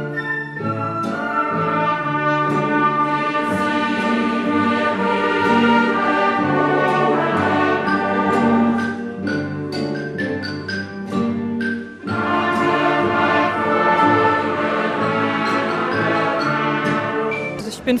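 A large amateur orchestra of bowed strings and brass, with recorders, playing together with a choir. The music dips briefly about twelve seconds in, then carries on.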